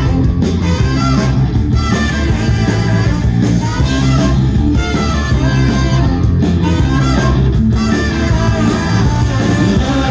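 Live ska-punk band playing loud through a passage with no lead vocal: electric guitar, bass and drums with saxophone and trumpet.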